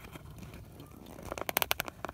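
Faint rustling, then a quick run of light clicks about one and a half seconds in: handling noise from a handheld camera being moved around.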